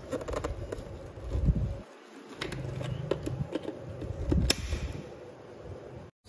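A few light clicks and knocks over a low rumble, typical of a small plastic appliance and its box being handled.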